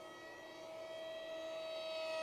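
Electric RC F-16XL model's 2700 Kv brushless outrunner motor and 6x3 propeller running at steady part throttle in flight: a thin whine held at one pitch, growing gradually louder.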